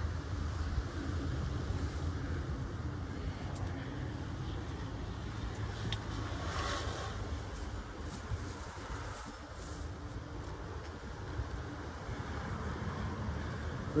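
Steady low rumble of distant motor vehicles.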